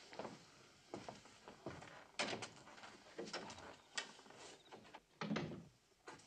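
Faint, scattered knocks and clunks of a door being opened and shut.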